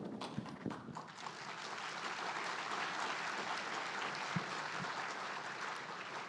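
Audience applauding steadily, beginning to die away near the end.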